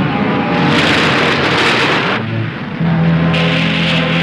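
Film-trailer soundtrack: music mixed with loud noisy sound effects. A wide rushing noise swells in under the music and cuts off sharply about two seconds in, followed by a low held tone as the noise comes back near the end.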